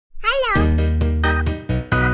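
A brief high-pitched cartoon-style vocal sound wavering up and down in pitch, then upbeat children's background music with regular, bouncy note changes.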